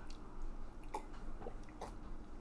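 A man sipping and swallowing water from a mug: a few faint, short mouth sounds about once every half second.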